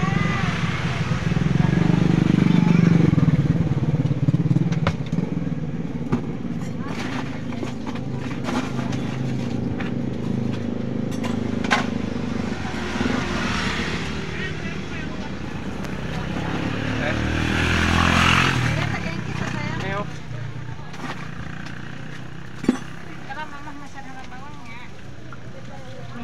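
Motorcycles passing close by on the road, their engines swelling and fading; the loudest pass comes about two to four seconds in, and another comes near eighteen seconds. A single sharp click sounds near the end.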